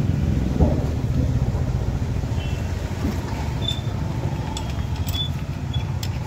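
A steady low rumble throughout, with a few light metallic ticks and pings in the second half as a ring spanner works the bolts of the insulator's aluminium conductor clamp.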